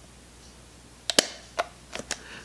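A few sharp metallic clicks, about four in the second half, from fingers working the thick metal bottom latch of a Rolleiflex 2.8F twin-lens reflex camera.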